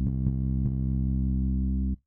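A bass sample from a hip-hop drum kit's bass folder plays a single low, bass-guitar-like plucked note held at one pitch. It is re-struck about three times in the first second and cuts off abruptly near the end.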